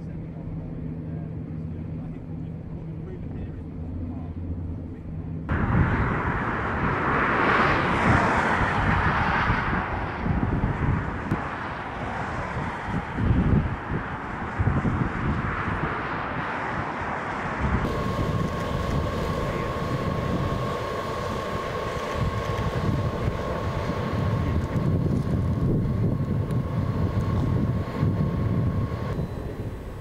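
Location sound in three cuts: a steady low engine drone over water, then, about five seconds in, loud gusty wind noise, and from about eighteen seconds wind with a steady high whine underneath.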